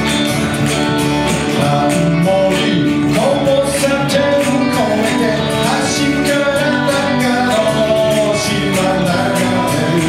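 Live band playing a song: strummed acoustic guitars over a steady beat, with a man singing the melody.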